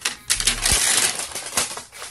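Shiny plastic wrapping crinkling and crackling as it is pulled off a hard plastic toy case, a dense run of crackles that thins out in the second half.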